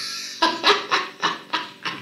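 A man laughing hard, a run of short bursts about three a second that fade toward the end.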